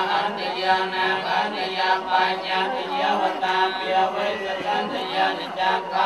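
Theravada Buddhist monks chanting a Pali blessing in unison: many men's voices overlapping on a steady, held reciting pitch.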